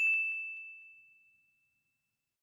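Notification-bell sound effect: a single bright ding that rings out and fades away over about a second and a half.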